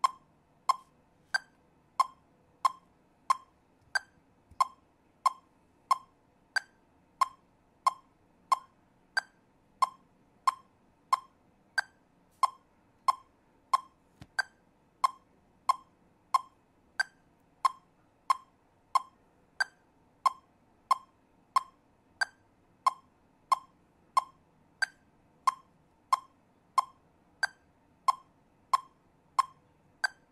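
Metronome clicking at 92 beats per minute, one click per beat with no subdivision. Every fourth click is higher-pitched, an accent marking the first beat of each four-beat bar.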